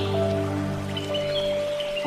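Soft, slow piano music with long held notes over a steady hiss of flowing water. A new note comes in about halfway through.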